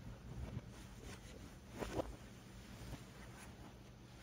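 Faint rustling of bed linen and fabric as someone settles onto a bed, loudest in a brief swell about two seconds in, over a low steady room hum.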